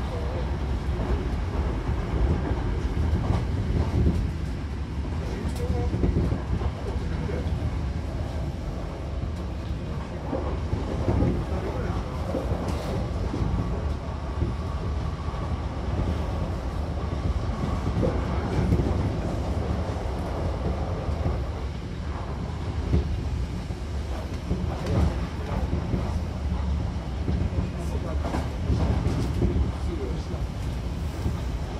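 Running noise inside a moving Hankyu Kobe Line commuter train car: a steady rumble of wheels on rails with scattered knocks from the track. A faint steady whine rises above it for several seconds in the middle.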